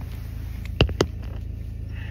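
Steady low hum of a car idling, heard inside the cabin, with two sharp knocks close together about a second in as the handheld phone is turned around.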